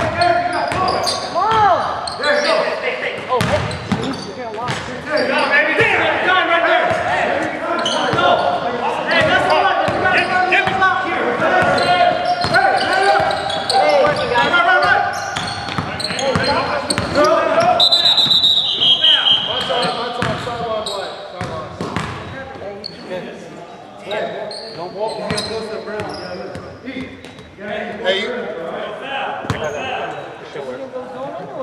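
A basketball bouncing on a hardwood gym floor amid players' shouting, echoing in a large gymnasium. A brief high squeal comes a little past the middle.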